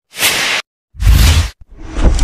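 Two short whoosh sound effects, the second deeper and fuller than the first, with another swell starting to build near the end.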